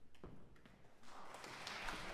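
A few light taps, then from about a second in, a low murmur of audience chatter rising in the hall.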